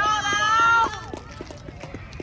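A loud, high-pitched shouted cheer lasting just under a second, followed by a few short, sharp knocks.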